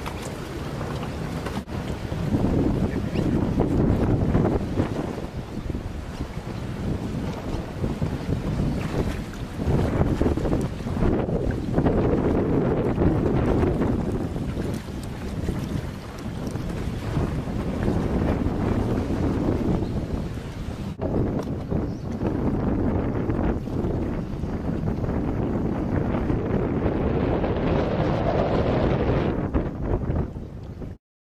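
Wind buffeting the microphone, rising and falling in gusts, over water splashing and sloshing as buckets of water are tipped into a small open boat to swamp it.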